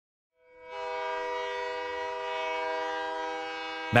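A train whistle sounding one long, steady chord of several tones for about three seconds. It fades in about half a second in and stops just before a voice begins.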